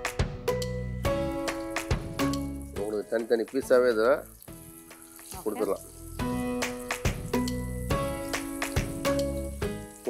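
Marinated chicken pieces sizzling as they are laid into hot oil in a frying pan, with the sizzle rising about a second in. Background music with plucked notes plays over it.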